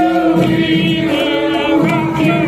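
Music with many voices singing together over a steady held note, like a crowd singing along to amplified music.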